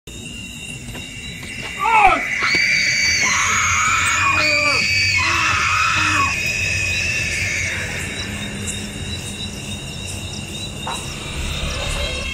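Horror-style sound-effect track: a sudden loud hit about two seconds in, then wailing, scream-like voices gliding up and down over eerie music, thinning out after about six seconds.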